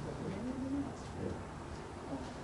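A brief low murmur from a person's voice, one drawn-out syllable rising slightly in pitch, over steady room noise.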